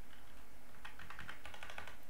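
Typing on a computer keyboard: a quick run of keystrokes starting about a second in and lasting about a second.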